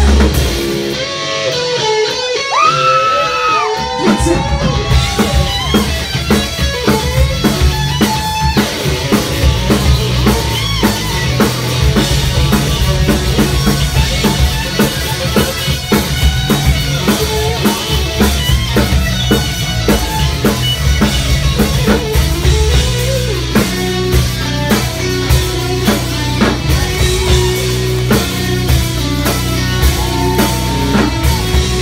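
Hard rock band playing live. A lone electric guitar plays bending lead notes, then about four seconds in the drums and bass come back in with a steady, driving beat under distorted guitar.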